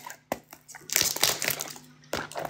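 Cardboard product box being handled and its top flap pried open by hand: a few sharp clicks, then a short run of crackling and crinkling of the packaging about a second in.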